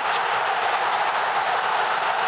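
Large stadium crowd cheering in a steady roar as a goal goes in.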